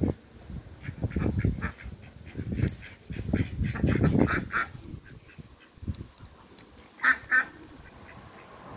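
Domestic ducks and geese calling in short repeated quacks and honks, with a loud double call about seven seconds in.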